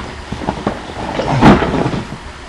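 Cardboard packaging being handled and moved: scattered small knocks and rustles, with a louder scuffing rustle about a second and a half in.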